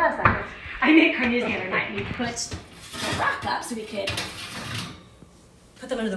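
Kitchen clatter of dishes and metal being handled and an oven door being opened, with some muffled talking.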